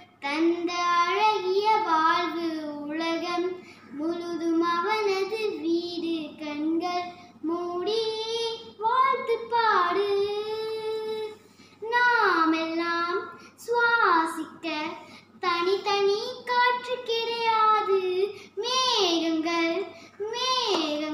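A young girl singing solo and unaccompanied, in a series of melodic phrases with held, sliding notes and brief pauses for breath between them.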